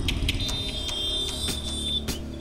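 Dramatic background score: a low drone with a thin, steady high-pitched tone that comes in about half a second in, and scattered light ticks.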